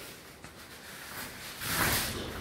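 Two wrestlers grappling on foam floor mats: low rustling and scuffing, then a short hissing burst near the end.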